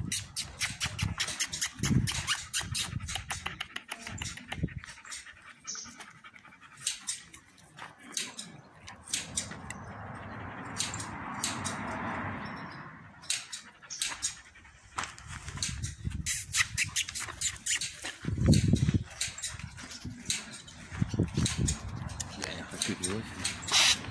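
Two Turkmen Alabai (Central Asian Shepherd) puppies playing, with short dog vocalisations about two seconds in and again near the end. Frequent sharp clicks and scuffles run through the whole stretch.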